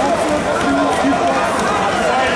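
Many voices talking and calling out at once in a crowded sports hall, with no single clear speaker.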